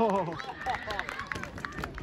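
Open-air football-match voices: a long falling shout fades out at the start, followed by scattered short calls and sharp knocks.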